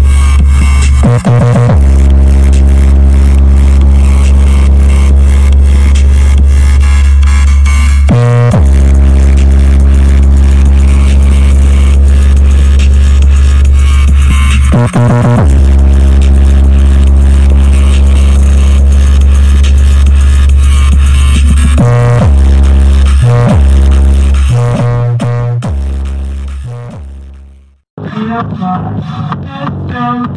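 Electronic music played very loud through a large automotive sound wall of stacked speakers and horn tweeters, dominated by a deep, continuous bass. The bass drops out briefly about every seven seconds, and the music fades out over the last few seconds.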